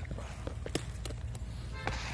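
Pepper plant leaves and stems rustling, with several small sharp snaps, as a hand pulls at a stuck bell pepper, over a steady low rumble.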